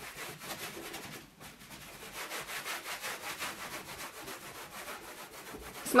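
Microfiber cloth scrubbing a kitchen panel in quick, even back-and-forth strokes, with a brief pause about a second in. The cloth is rubbing off a sticky grease film softened by a citrus-vinegar spray.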